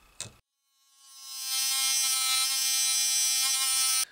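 Handheld rotary tool spinning up about a second in, then running at a steady high-pitched whine with a hiss as its small abrasive cutoff wheel grinds against a hard iron concretion, a wheel too weak to cut it. A short click comes just before.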